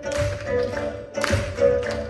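A Chinese traditional instrument ensemble with pipa playing live: held melodic notes with sharp plucked or struck accents, three of them standing out in two seconds.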